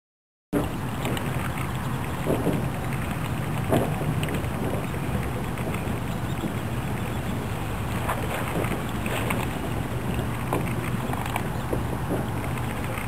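Outdoor ambience over open water: a steady low rumble and hum with wind on the microphone and scattered small clicks and splashes, starting abruptly about half a second in.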